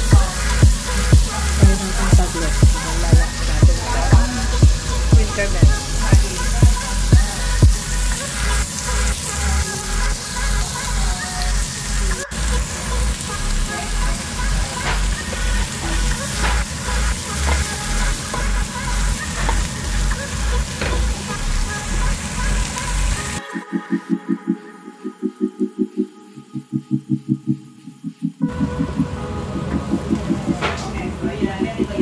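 Background music with a steady beat of about two pulses a second. About three-quarters of the way through it drops to a sparser, quieter passage for a few seconds before the fuller sound returns.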